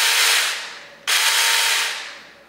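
Saker 20-volt mini cordless electric chainsaw running with no load, triggered twice: each time the motor and chain start at once, run loud for about a second, then wind down after the trigger is let go.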